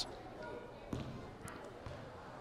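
Faint gymnasium ambience: a low murmur of distant voices in a large hall, with a few soft knocks about a second in and again half a second later.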